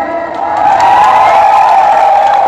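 Rally crowd cheering and shouting, with some clapping, swelling about half a second in.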